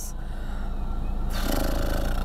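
Vehicle engine running steadily and growing gradually louder, with a broad hiss joining about one and a half seconds in.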